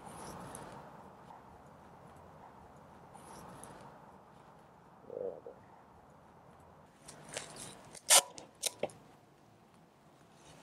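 Faint background hiss broken by a few sharp clicks and knocks about seven to nine seconds in, the handling noise of wooden hive boxes and a roll of tape.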